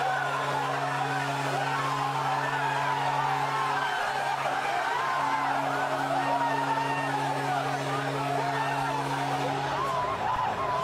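Hockey players shouting and cheering in celebration, many voices at once, over a steady low droning chord that breaks off briefly about four seconds in and then resumes.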